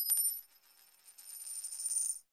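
Sound effect of an animated logo intro: a bright, high metallic chime rings and fades out within the first half second. After a short gap, a high shimmering sound swells up towards the end.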